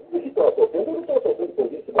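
A caller's voice over a very poor phone line: choppy, muffled and garbled, too broken to make out any words.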